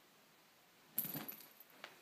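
A cat pouncing and jumping down off a bed: a small jingle bell shaking with soft thumps, starting suddenly about a second in and fading over half a second, with a brief jingle again near the end.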